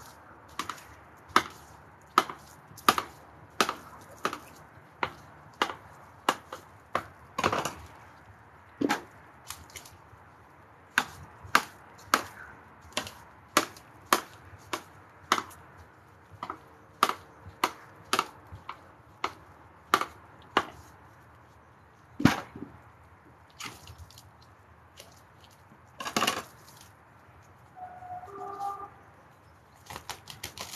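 Knife chopping vegetables on a cutting board: a long run of sharp single chops, roughly one every half second to a second, thinning out in the last few seconds.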